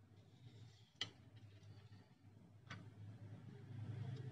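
Near silence with two faint clicks, about a second in and just under three seconds in, from small parts being handled as a steel wire leg is fitted to a small geared motor.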